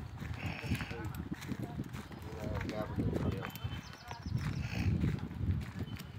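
Footsteps and handling noise from someone walking with the phone, a run of uneven low thuds, with brief indistinct voices in the background.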